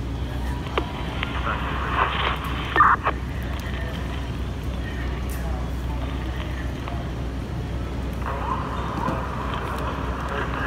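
Steady low engine hum running throughout, with voices breaking in briefly, once about two seconds in and again near the end.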